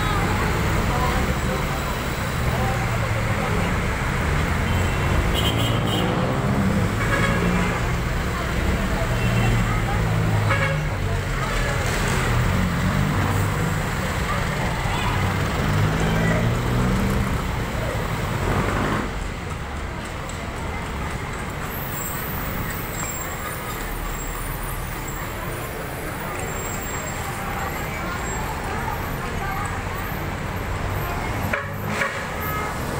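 Busy city street: road traffic running past, with a vehicle horn tooting and people talking nearby. The voices fade out about two-thirds of the way through, leaving mostly the steady traffic noise.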